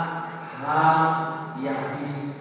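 A man's voice into a microphone, in drawn-out, chant-like phrases of held pitch.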